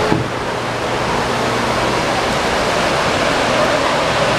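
Steady, loud rush of falling water from a dark-ride boat flume's waterfall, with a low hum underneath and a brief knock at the very start.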